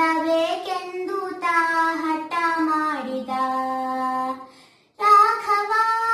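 A young girl singing solo in long held notes, gliding down to a low note about three seconds in, breaking off briefly near five seconds, then coming back in on a higher sustained note.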